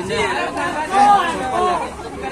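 Chatter of people talking close by, voices that the recogniser did not write down as words.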